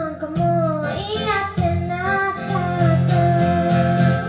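A woman singing a melody while strumming chords on an acoustic guitar, performed live through a vocal microphone.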